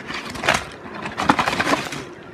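Plastic snack packets crinkling and rustling as they are taken out of a snack box by hand, in a run of sharp crackles.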